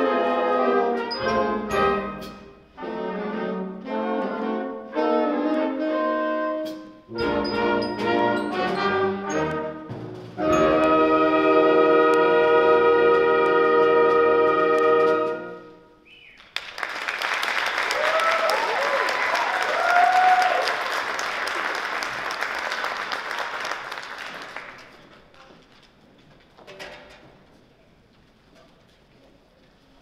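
A school concert band with prominent brass plays the last bars of a swing jazz arrangement in short, punchy chords, ending on one long held chord about halfway through. Audience applause with a few whoops follows for about eight seconds, then dies away.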